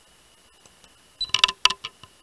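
A quick run of about half a dozen sharp clicks and taps about halfway through, the handling noise of the recording camera being moved, over a faint steady high whine.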